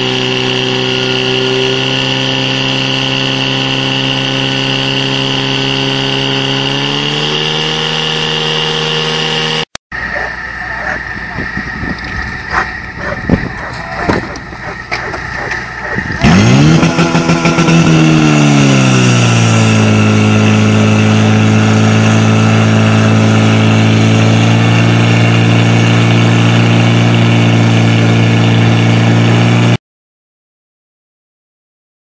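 Portable fire pump engine running hard at high revs, its pitch stepping up about seven seconds in. After a short break and a stretch of irregular knocks and noise, the engine revs sharply up and settles into a loud steady run, cutting off suddenly at the end.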